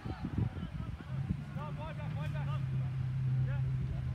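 A steady low hum comes in about a second in and holds, with distant short calls or shouts over it around the middle, and low rumbling thumps throughout.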